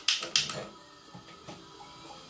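Spark igniter clicking at a gas stove burner: a few quick, sharp clicks, about five a second, that stop about half a second in.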